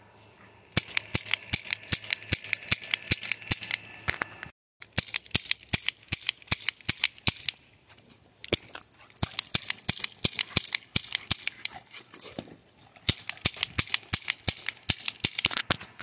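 Silver toy revolver firing rapid cap-gun-like cracks, about five or six a second, in four runs of a few seconds each with short pauses between.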